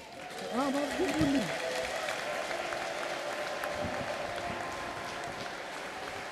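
A large congregation applauding: clapping builds about a second in and then holds steady, with a brief raised voice near the start.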